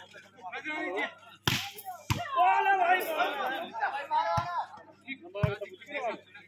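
Volleyball being struck by hand during a rally: four sharp slaps, the first and loudest about a second and a half in, the others spread across the next four seconds. Men's voices talk and call out between the hits.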